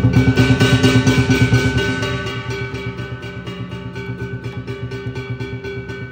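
Lion dance percussion ensemble of drum, cymbals and gong playing a fast, even beat of about six strokes a second, with the cymbals and gong ringing over it. It is loud for the first two seconds, then eases off.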